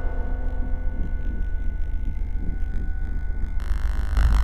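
Ambient electronic soundscape: a deep low drone that pulses rapidly, with faint steady high tones above it; a brighter layer comes in shortly before the end.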